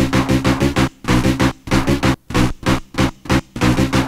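Fast 1990s techno from a live DJ set: a rapid pulsing synth riff, about six or seven stabs a second, that drops out in several short gaps through the middle before running on evenly.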